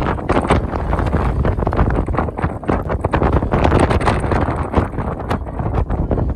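Wind buffeting the camera's microphone in a loud, gusty rumble, with footsteps on dry, stony ground showing through as irregular steps.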